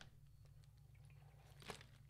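Near silence: faint sips and swallows from a plastic water bottle, with one small click near the end.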